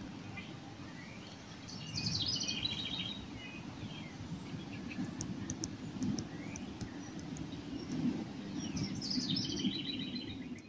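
Songbirds chirping and singing in backyard trees, with a burst of quick chirps about two seconds in and another near the end, over a steady low background rumble.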